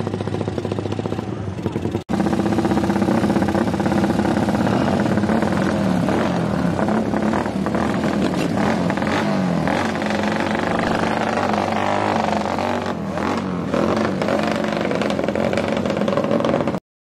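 Modified motorcycle engine, loud. It runs steadily at first, then after a cut about two seconds in it is revved repeatedly, its pitch rising and falling.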